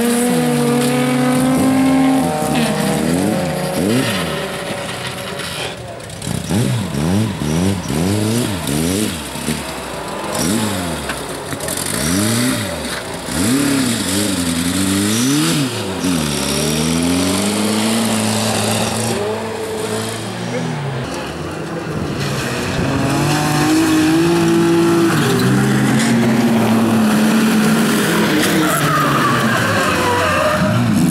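Several bilcross cars' engines revving hard, their pitch climbing and dropping again and again with gear changes, several engines overlapping, with tyres sliding on loose gravel.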